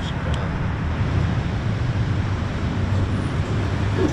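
Steady low rumble of road traffic, with no single vehicle standing out.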